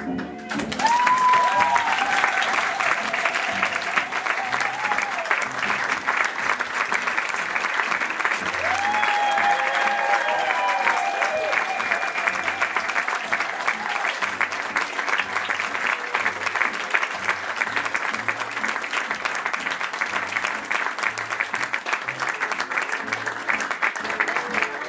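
Audience applauding, with music and a steady low beat playing underneath.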